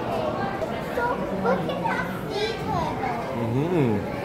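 Background chatter of children's and other visitors' voices, with no distinct words.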